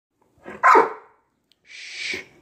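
A dog barks once, about three-quarters of a second in. A short hiss follows near the end.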